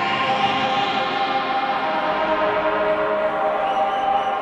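Beatless opening of a techno DJ set: held, slowly shifting synthesizer chords with no kick drum or percussion.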